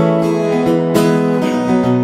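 Guitar strummed in full chords, with a sharp stroke about a second in and the chord ringing on between strokes.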